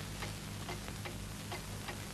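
Faint, even ticking at about four ticks a second over a steady low hum and hiss.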